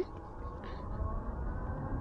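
Super73 RX electric bike accelerating hard from a stop: low wind and road rumble that grows gradually louder, with a faint high motor whine.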